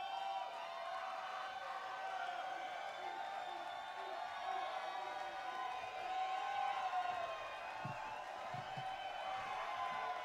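Live concert crowd cheering and whooping, many voices calling out at once in a steady din.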